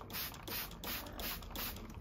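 Hand spray bottle squirting water mist in quick repeated trigger pumps, about three short hisses a second.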